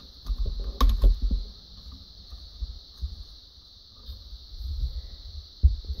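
Plastic Lego parts clicking and rattling as a minifigure is pushed into a model's cockpit, with a cluster of sharp clicks about a second in and low bumps from handling the model.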